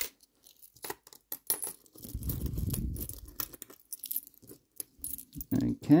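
Small brass Hong Kong ten-cent coins clicking and clinking against each other as they are picked through by hand on a cloth, in a run of short separate clicks. A low rubbing rustle of handling runs for about a second and a half starting around two seconds in.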